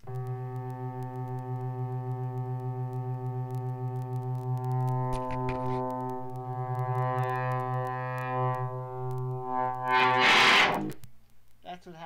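Two Retevis handheld walkie-talkies held close together with both talk buttons pressed, feeding back into each other as a loud, steady, distorted buzzing tone with many overtones. About ten seconds in it breaks into a harsh burst of static and then cuts off.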